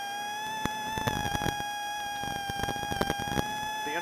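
Onboard sound of a Plymouth Neon rally car driving a snowy stage at speed: a steady high whine that climbs slowly in pitch as the car gathers speed, with scattered clicks and knocks.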